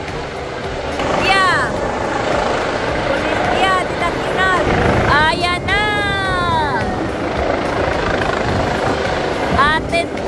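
A helicopter hovers overhead with a steady beating rumble over a crowd's murmur. Voices call out in drawn-out shouts that fall in pitch, most strongly between five and six and a half seconds in.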